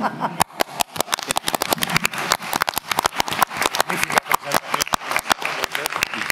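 Applause from a small group: separate hand claps can be heard, at several claps a second, thinning as speech resumes.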